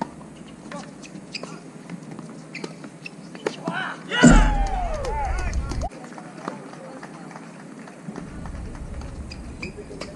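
Doubles tennis rally: a few sharp pops of racket strings hitting the ball in the first seconds. About four seconds in, as the point ends, a player lets out a loud shout lasting about a second and a half.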